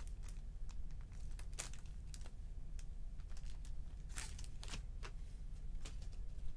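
Foil trading-card pack wrappers and card packaging being handled: scattered crinkles and light clicks, with louder crackles about one and a half seconds in and again around four to five seconds in, over a low steady hum.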